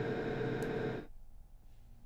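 Dense, sustained reverb wash from the Airwindows Galactic2 reverb plugin: a thick texture of many held tones that cuts off suddenly about halfway through, leaving only a faint low hum.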